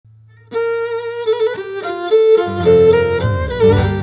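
Cretan lyra playing the opening melody of a syrtos, its bowed notes held and ornamented, with the band's bass and lower strings coming in about halfway through.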